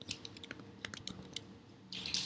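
Computer keyboard keys clicking: a quick, irregular run of about ten faint clicks.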